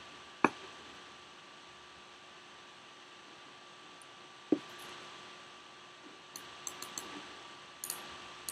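Faint steady room hum broken by two dull knocks, about half a second in and again midway, then a quick run of light computer mouse clicks near the end.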